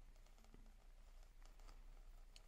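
Near silence with a few faint ticks and scratches: a pen-style craft knife cutting through a sheet of screentone.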